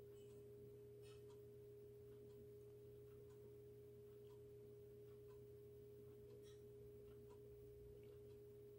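Near silence: a faint steady hum at one constant pitch, with a few faint scattered ticks.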